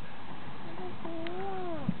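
A cat meowing once: a single drawn-out call, about a second long, that rises slightly and then falls, in the second half.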